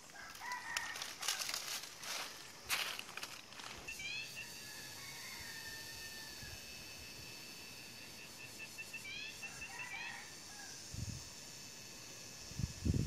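Birds calling: a quick run of short rising notes about four seconds in and again near the tenth second, with a long, steady high call held between them. A few short rustling noises come in the first four seconds.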